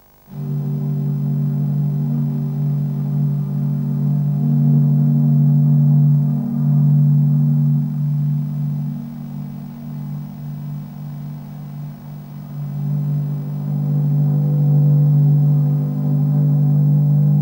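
Jazz ensemble playing low, sustained held notes that come in suddenly out of silence, ease off about ten to twelve seconds in and then swell again.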